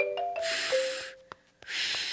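A few short musical notes, then two breathy blows of air through pursed lips: a failed attempt to whistle that gives only a hiss and no tone.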